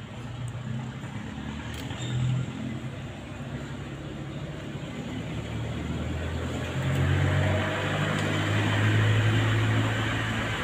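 Low engine rumble of a motor vehicle, growing steadily louder. Sharp clicks of pruning shears about two seconds in.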